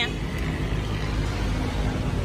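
Kitagawa drill press with a 13 mm chuck, its electric motor and spindle running steadily with an even hum; the machine runs very smoothly.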